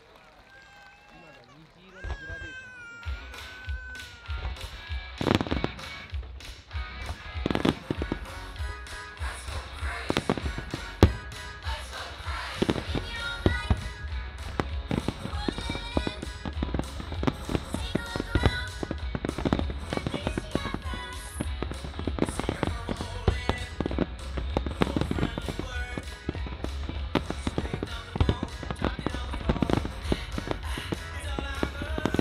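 Fireworks display set to music: the music starts about two seconds in, and from then on firework shells and comets keep bursting and crackling over it, with a few louder single reports among them.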